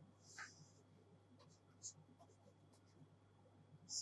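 Faint scratching and light ticks of a pen on a writing tablet as a sketch is drawn: a short scratch near the start, then a few soft ticks and another scratch near the end, otherwise near silence.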